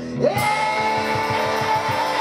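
Small rock band playing live on electric guitars and bass: a high note slides up and is held for about two seconds, over a steady pulsing bass line.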